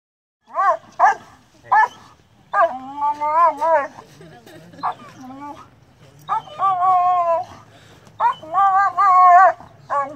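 A dog held back on a leash vocalising: three short sharp barks, then long, wavering, high-pitched whining howls.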